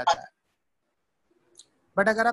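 A person's voice trailing off at the end of a phrase, then a pause of about a second with near silence, and speaking starts again at the very end.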